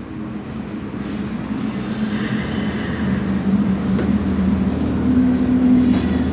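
A steady low mechanical hum that slowly grows louder.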